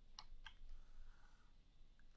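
Near silence with two faint clicks a quarter and half a second in, then a faint soft scrape about a second in: a stylus tapping and drawing on a drawing tablet.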